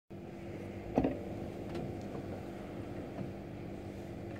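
Pipe organ console being handled before playing: a sharp knock about a second in and a few light clicks, as of stop tabs being set, over a steady low hum.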